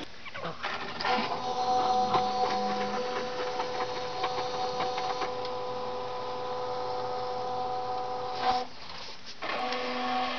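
Samsung front-loading washing machine running with a steady motor whine, with some clicks in the first few seconds. It stops briefly near the end, then starts again, as the drum does when it pauses between turns.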